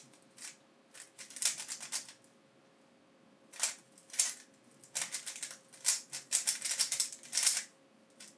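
Rapid plastic clacking of a YJ YuLong V2M magnetic 3x3 speed cube being turned in a speedsolve. The turns come in quick bursts, with a pause of about a second and a half a couple of seconds in.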